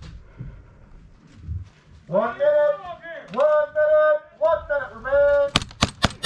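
A person shouting in several long, drawn-out calls, then a few quick airsoft pistol shots in rapid succession near the end.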